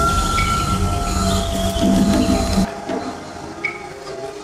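Concert band playing an unconventional sound-effect passage: held high, squealing tones over a low rumble. About two-thirds of the way through it cuts off abruptly into a much quieter stretch with a few scattered sounds.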